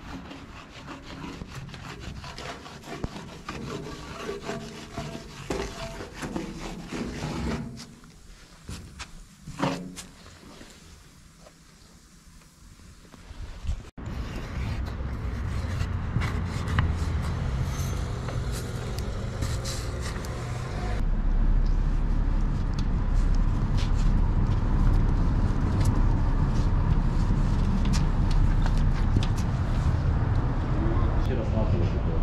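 Wide-tip refillable paint marker scraping and squeaking across wall and glass in a series of short tagging strokes. Under it runs a low street rumble that becomes louder in the second half.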